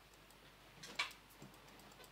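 Faint clicking of computer keys pressed to step through presentation slides: a few light ticks, one sharper click about a second in, then a soft knock.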